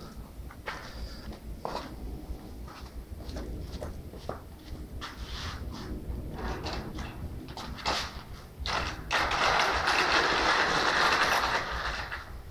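Clicks and knocks of a fabric-covered stage-set panel being handled. Near the end comes about three seconds of loud rustling and scraping as the panel is moved aside.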